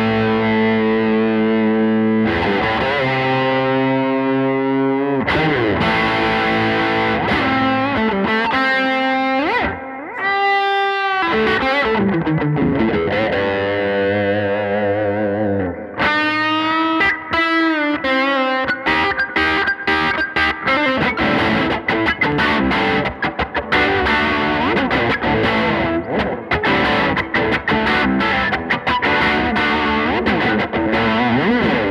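Guild Surfliner Deluxe solidbody electric guitar played through a 1964 Fender Vibroverb amp with light overdrive: ringing chords, their pitch wavering about ten seconds in and again around seventeen seconds, then quicker picked notes and chord stabs through the second half.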